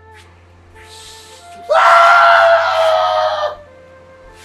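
A man's loud scream, held at a steady, slightly falling pitch for about two seconds before cutting off, over soft background music.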